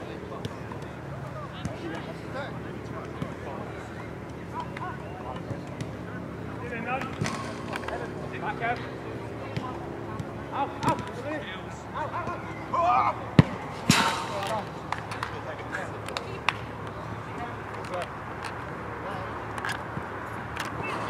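Players calling and shouting across an outdoor football pitch during five-a-side play, with a few sharp knocks of the ball being struck, the loudest a little after the middle. A steady low background hum runs underneath.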